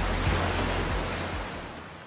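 Ocean surf washing in under background music, the noise swelling and then both fading away toward the end.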